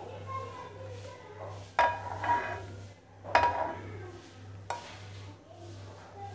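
Kitchenware clinking as caramel is scraped from a non-stick pan into a small glass bowl: two sharp knocks with a brief ring, about two and three and a half seconds in, then a lighter tap.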